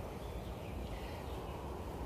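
Quiet outdoor background: a faint, steady low rumble with no distinct events.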